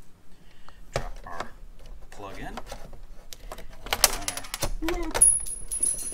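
Sharp metal clicks and clatter from the parts of a hand-cranked clay extruder being fitted together and handled on a stainless steel bench. The loudest clicks come about four and five seconds in.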